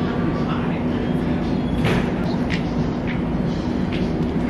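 A steady low mechanical hum, with indistinct background voices and a few brief clicks.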